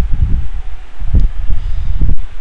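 Irregular low rumbling noise on the microphone, with a short stronger burst about a second in.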